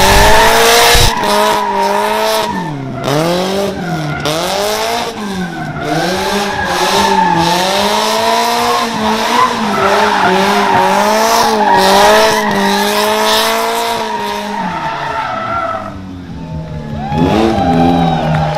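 Toyota Corolla KE70 drift car sliding under power. The engine is held high in the revs, its pitch dipping and rising about once a second as the throttle is worked, while the rear tyres skid and squeal on the asphalt. Near the end the engine drops away briefly, then revs up again.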